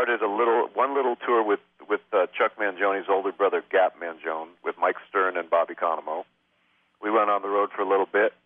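Only speech: a man talking, with a brief pause a little after six seconds in.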